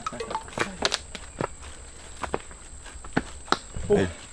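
Footsteps climbing a steep dirt forest trail: uneven scuffs and crunches of shoes on earth and leaf litter as the hikers step upward.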